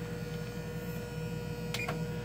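Steady low hum with a faint held tone from a running Frigidaire oven, and one short click near the end as a key on its control panel is pressed.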